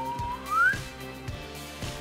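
A boy whistling one note that slides upward in pitch and breaks off before the first second is over, with faint background music carrying a steady beat.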